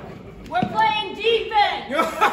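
A man's voice calling out on stage from about half a second in, with no clear words.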